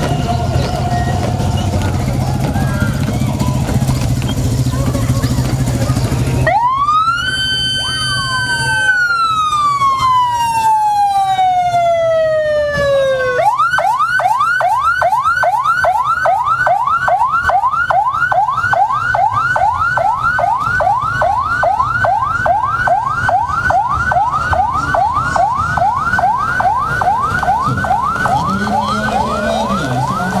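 Electronic siren of a navy military police (POMAL) patrol car, starting about six seconds in. It rises to a high wail and holds, then slides slowly down. Partway through it switches to a fast yelp of rapidly repeating rising sweeps, about two or three a second.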